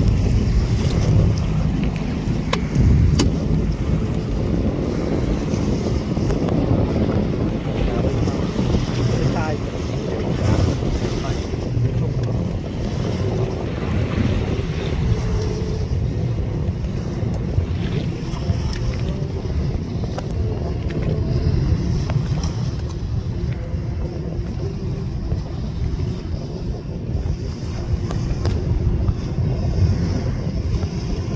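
Steady low wind rumble buffeting the microphone over the rushing wash of waves at sea.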